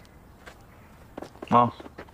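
A few faint footsteps on pavement, then a man's short "eo" about one and a half seconds in.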